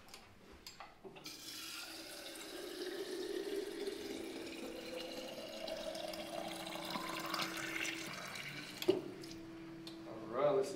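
Water running from a FloWater refill station's spout into an aluminum bottle, starting about a second in. The pitch climbs as the bottle fills, over a steady hum. The flow stops near the end, and there is a single knock shortly after.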